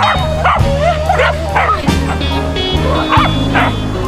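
Corgis barking in a string of short, high yips over background music with a steady bass line.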